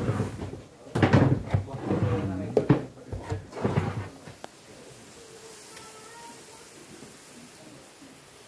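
A worker's long-handled metal scraper knocking and scraping against a wooden trough while working thickened sugar-cane syrup for panela. There is a quick series of knocks in the first half, then only a low steady background.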